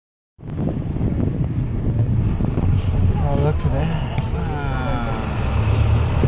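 Bus engine and road noise heard from inside the cabin: a steady low rumble that starts abruptly a moment in.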